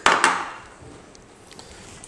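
Metal tongs knocking and scraping against a metal pan as a bundle of spaghetti is lifted out, one short clatter right at the start.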